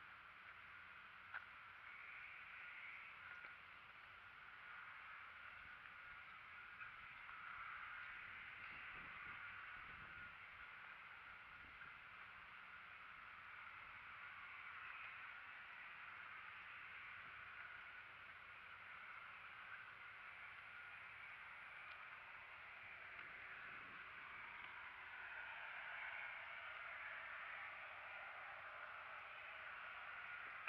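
Near silence: faint outdoor ambience, a steady soft hiss with a small click about a second in.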